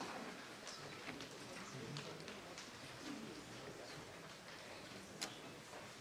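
Faint room noise in a concert hall during a pause between pieces: scattered light clicks and taps over a low murmur, with one sharper click about five seconds in.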